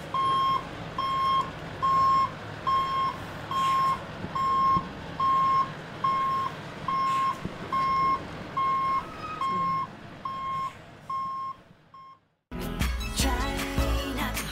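A lorry's reversing alarm beeping steadily, about one and a half beeps a second, over the low sound of its engine as it backs up. The beeps stop about twelve seconds in.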